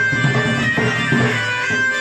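Live folk music for danda nacha dancing: a held melody line over a steady, regular beat.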